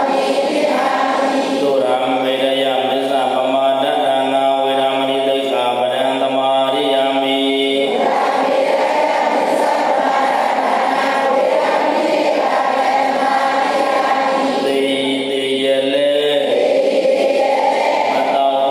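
Buddhist devotional chanting by a group of voices in unison, recited in long, drawn-out held notes. About eight seconds in the voices blur into a denser, less distinctly pitched sound, and clearer held notes return near the end.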